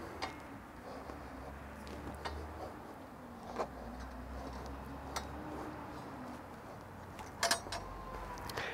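A few light metallic clicks as channel-lock pliers and a hand work a hydraulic quick coupler's fittings, loosening it to relieve trapped line pressure. They come over a low, steady rumble.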